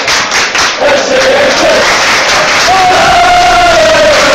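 Football crowd of away supporters chanting together, a loud mass of voices holding long sung notes.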